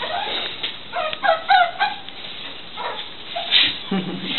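A bird calling: a quick run of four or five short pitched notes about a second in, with a fainter call and some scuffing near the end.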